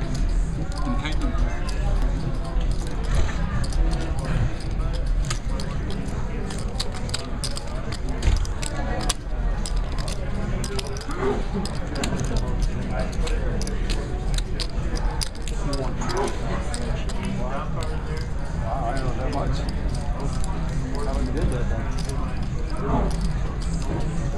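Poker chips clicking and clacking over and over as players handle and stack them at the table, over indistinct background chatter and a steady low rumble.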